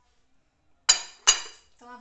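Two sharp clinks of hard kitchenware about half a second apart, each ringing briefly.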